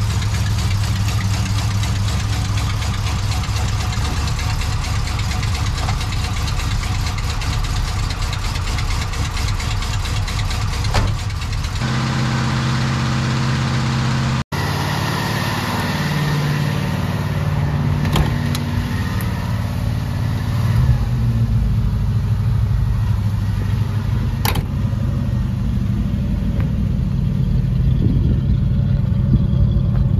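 1986 Jeep Grand Wagoneer's AMC 360 V8 running at idle, a steady low drone. About halfway through the sound cuts abruptly to a second take of the engine running, with a few clicks.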